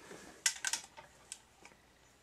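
A few light, sharp clicks and taps of hands handling equipment: a quick cluster about half a second in, then a few fainter ones.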